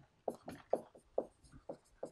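Dry-erase marker writing on a whiteboard: a quick series of about seven short, separate strokes.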